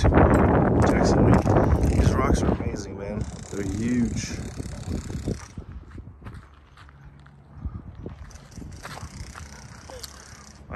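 Outdoor handheld recording noise: wind on the microphone with crackling, rasping clicks, loudest in the first two or three seconds and then fading. A faint voice is heard briefly about three to four seconds in.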